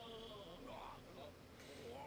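Faint anime voice acting playing quietly under the reaction: a character's drawn-out, wavering, strained voice.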